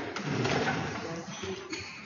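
Faint, indistinct voices and movement noise in a hall as people settle at a panel table, with a sharp click right at the start.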